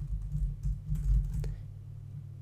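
Computer keyboard being typed on: a few scattered keystrokes, mostly in the first second and a half, over a steady low hum.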